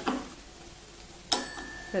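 A desk call bell struck once, about a second and a quarter in: a single bright ding that rings on and fades.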